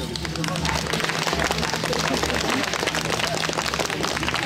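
Spectators applauding: a dense, steady clatter of many hands clapping.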